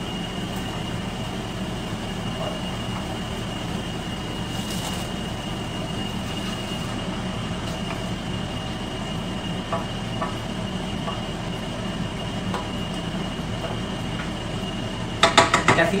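A kitchen appliance running with a steady whirring hum and a faint, constant high whine, under a few faint clinks of utensils on a pot.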